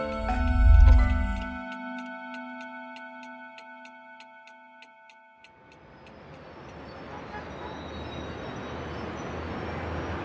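Film soundtrack music ends with a deep low boom about a second in. A held chord then fades under a quick, steady clock-like ticking. At about five and a half seconds this gives way to rising outdoor traffic ambience with a low rumble.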